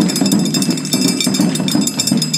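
Chindon-ya street-band percussion: a fast run of strikes on the chindon drum set's small drums and metal gong, with high metallic ringing, over a low steady tone.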